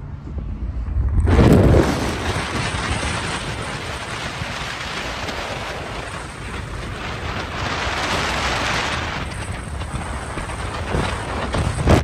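Wind buffeting the phone's microphone together with road and tyre rush from a car travelling at highway speed. The rushing noise starts suddenly with a heavy thump about a second in, then runs on steadily.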